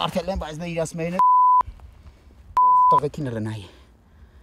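Two broadcast censor bleeps cut into speech, each a loud, steady, half-second tone, about a second and a half apart, blanking out words.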